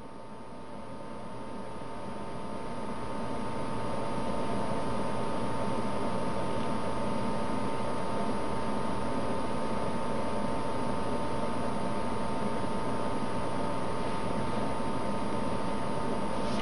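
Steady hiss with a faint high hum, swelling over the first few seconds and then holding level.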